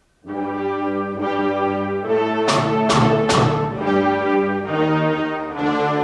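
A concert band begins playing about a quarter second in, with full sustained chords that move to a new chord every second or so and a few sharp accented attacks in the middle.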